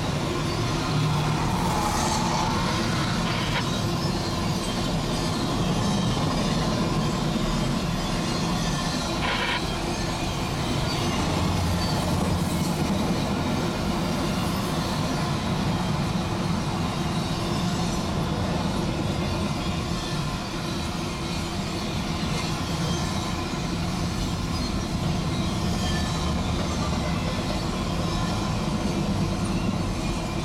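CSX Q165 intermodal freight train of double-stack container well cars rolling past: a steady rumble of steel wheels on rail, with a brief wheel squeal about two seconds in.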